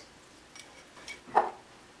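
Small glass bowls being handled on a stone countertop: a faint tap about half a second in, then a single louder short knock a little past the middle.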